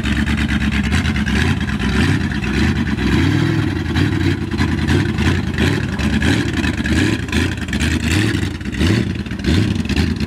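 Ford 390 big-block V8 of a lifted mud truck running and revving up and down as the truck drives across a field.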